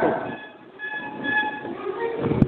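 Faint horn-like tones in the background: a few short, steady notes sounding together, heard in a pause in the speech.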